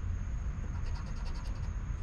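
A coin scraping the silver coating off a scratch-off lottery ticket in short, light strokes, over a steady low hum.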